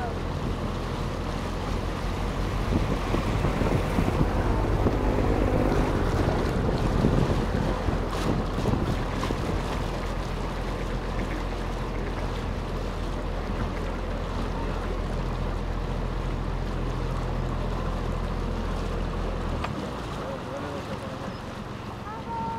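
Canal boat's motor running with a steady low hum under water wash and wind on the microphone; the hum stops about two seconds before the end.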